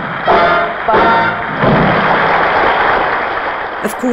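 A live band's closing chords, then a dense, even spread of audience applause, heard on an off-air recording made with a microphone beside a television set.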